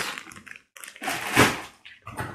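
Plastic bag of frozen fries crinkling as it is handled and put down: one short rustling burst about one and a half seconds in.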